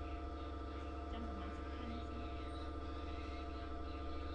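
Steady low electrical hum made of several constant tones, with faint, distant voices underneath.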